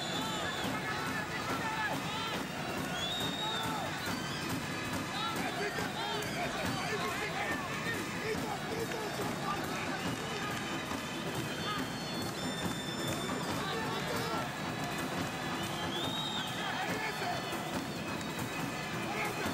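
Continuous dense mix of many overlapping voices and music, steady in level with no pauses.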